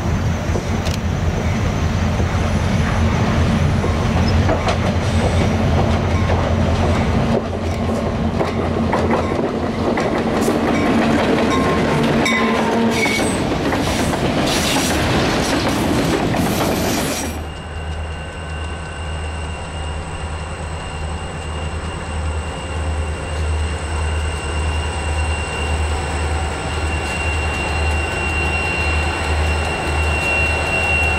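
Freight train rolling past close by at low throttle as it drifts downgrade, autorack cars' wheels clicking over the rail joints with some squeal. About halfway through it cuts to a quieter, steadier rumble with a regular low throb from an approaching diesel locomotive.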